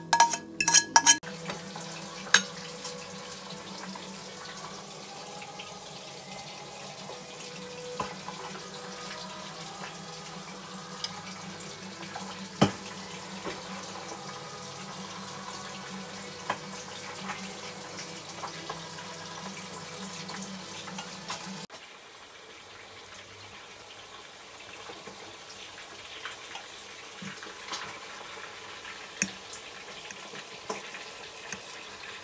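Steady hissing kitchen background with a low hum, broken by a few sharp clinks of cookware. The hum drops out about two-thirds of the way through.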